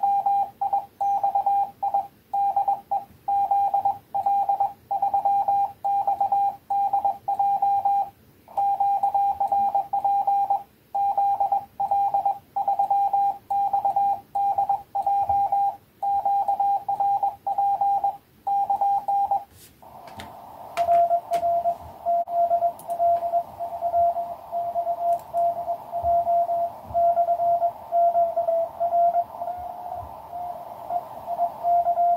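Morse code from a QCX mini 5 W CW transceiver on 20 m: for about twenty seconds a single clean tone is keyed in dots and dashes with quiet gaps between. Then a couple of clicks, the receiver's band hiss comes up, and a slightly lower-pitched Morse signal is keyed through the noise.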